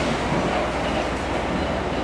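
A diesel multiple unit pulling away from the platform: a steady rumble of its engine and wheels on the rails, slowly fading as it draws away.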